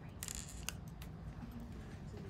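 Small handling noises from nail-art tools: a short, high scratchy rustle, then a single sharp click about half a second later.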